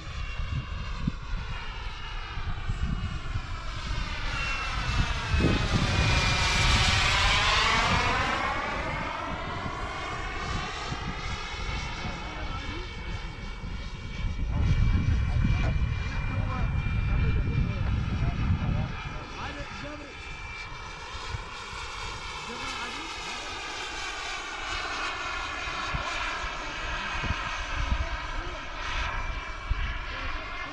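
Xicoy X-45 model gas turbine of an RC jet running in flight, a steady whine and hiss from the airborne model. About six seconds in it passes close, and the sound swells and sweeps in pitch, then it draws away and fades.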